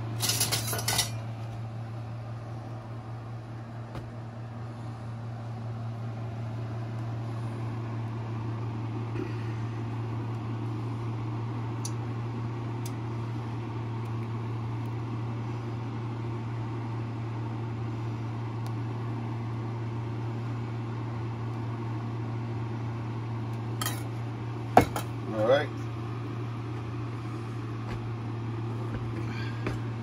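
A metal ladle clinking and scraping against a saucepan as egg custard is ladled into a pie crust: a clatter in the first second and a couple of sharp clinks near the end, over a steady low hum.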